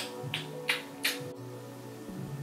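Background music with a steady beat: held chords over a bass line, with crisp percussion ticks about three times a second.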